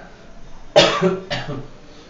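A man coughing: one sharp cough a little before halfway through, followed by a second, shorter one.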